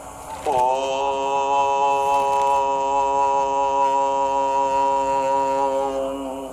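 A chanted voice holding one long note, sliding up into pitch at the start and then held steady for about five seconds.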